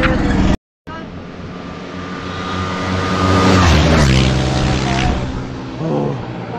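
A motorcycle passing close by at speed. Its engine note grows louder as it approaches and drops in pitch as it goes past, about four seconds in, then fades away.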